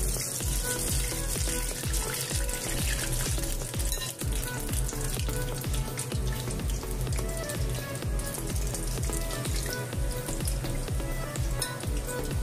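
Curd doughnut dough deep-frying in hot oil, sizzling with a hiss that swells near the start as a fresh ball of dough goes in, and again later as another is added. Background music with a steady beat plays throughout.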